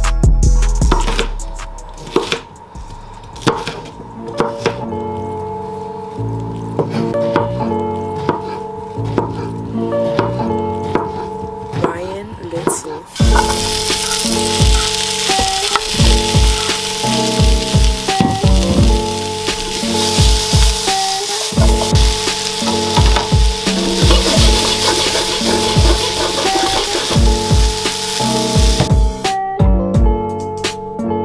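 Background music with a steady beat. A little before halfway in, sliced courgettes and peppers start sizzling loudly in a hot frying pan as they are sautéed. The sizzle stops shortly before the end, and the music carries on.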